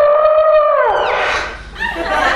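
A woman's high-pitched scream of fright, held on one pitch for about a second and then breaking off, with a couple of shorter shrieks after it.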